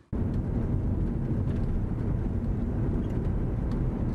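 Steady engine and road noise of a moving car, a constant low rumble.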